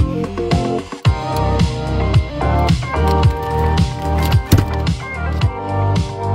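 Electronic music with a steady beat and deep, falling bass notes, played through a loudspeaker woofer fed by a 1.7 mH ferrite-core low-pass coil. The music drops out briefly about a second in.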